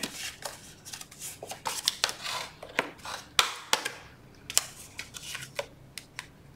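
Folded cardstock pieces being handled and laid down on a cutting mat: an irregular run of paper rustles, light taps and clicks.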